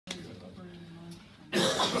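A steady low note held for about a second, then a loud cough as a man begins to speak.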